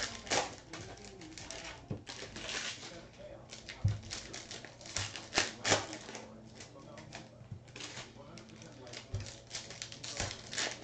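Trading-card packs and their box being handled: irregular rustling of foil wrappers with scattered taps and clicks.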